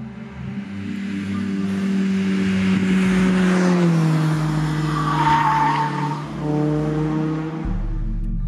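2002 Mazda MX-5 Miata NB2 with its 1.8-litre four-cylinder engine driving past through a bend, growing louder to a peak a few seconds in and then easing. A brief tyre squeal comes near the middle. Soft background music with sustained notes runs underneath.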